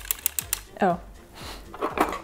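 Dean and Bean circular sock machine being hand-cranked, its needles and cam clicking quickly at about eight clicks a second, stopping about half a second in.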